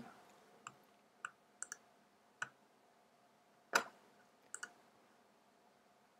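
Faint, scattered clicks from operating a computer: about eight short clicks spread over six seconds, a few in quick pairs, as keys and mouse buttons are pressed.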